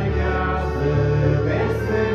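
A choir singing a Christian hymn in sustained chords over instrumental backing.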